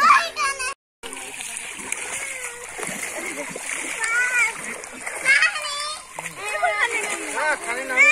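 Pond water splashing and sloshing as people wade and move in it, with children's high-pitched voices calling out over the splashing. The sound cuts out completely for a moment a little under a second in.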